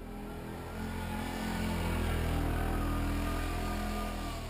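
Four-wheeler (ATV) engine running under throttle as it works through deep snow. It grows louder about a second in and eases slightly near the end.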